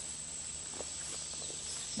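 Quiet outdoor ambience: a steady high-pitched hum over a soft hiss, with a few faint clicks about a second in as the small battery pack is handled.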